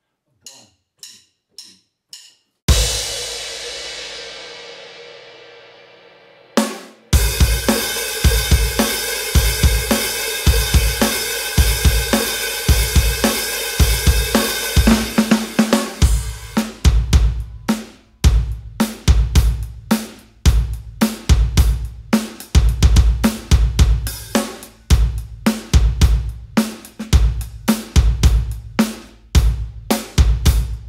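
Drum kit playing an indie rock beat at 108 bpm, without 808 percussion. A few quiet ticks count in, then a crash cymbal with bass drum rings out and fades over about four seconds, a short fill follows, and a steady groove of kick, snare and cymbals takes over. About halfway through the cymbal wash thins to a tighter kick-and-snare pattern.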